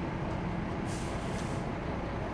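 City street ambience: a steady low rumble of traffic, with a brief hiss about a second in.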